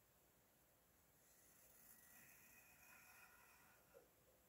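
Near silence, with faint pencil scratching on paper from about a second in to near the end as a long line is drawn, and a small click at the end.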